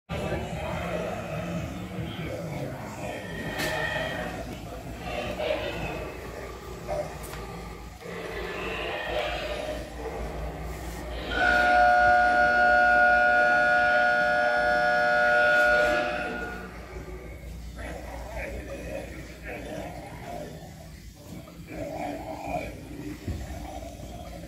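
Animatronic zombie prop's sound effects: groans and voice-like sounds, then a loud, steady wail held for about five seconds in the middle.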